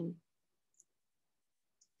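Near silence in a pause between sentences, after a woman's voice trails off at the very start, with two faint short clicks about a second apart.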